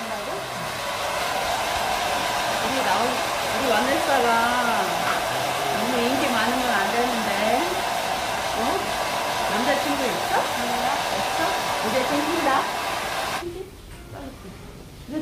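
Handheld hair dryer blowing on wet hair, a steady rush with a constant hum; it is switched off about half a second before the end.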